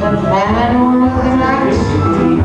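Live music from a small band of piano, violin and electric bass, with a sustained melodic line that slides between held notes.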